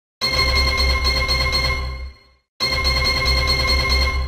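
Electronic slot-game sound effect with a pulsing bass under steady high tones, played twice in a row, each time lasting about two seconds and fading away.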